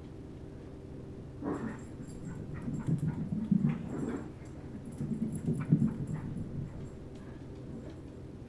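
A dog making a string of short vocal sounds, irregular and loudest in the middle, over a steady low hum: a dog pestering for someone to play with it.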